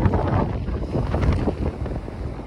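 Wind buffeting the microphone: an uneven low rushing rumble.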